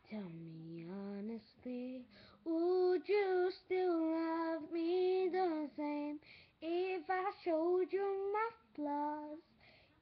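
A young girl singing a slow pop song unaccompanied, in phrases of held, wavering notes with short breaths between them.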